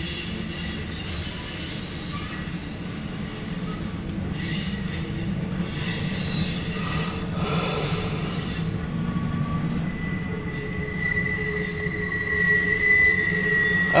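Freight cars of a CSX mixed freight train rolling past with a steady rumble, their steel wheels squealing on the rails in thin high tones that come and go. A single steady squeal holds through the last few seconds.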